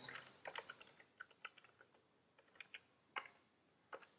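Computer keyboard being typed on, faint: a quick run of keystrokes over the first two seconds, then a few scattered key taps, the loudest a little after three seconds in.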